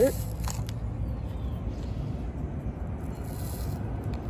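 Table salt poured from a plastic cup into a plastic cup of water: a faint grainy hiss with a few light plastic clicks, over a steady low background rumble.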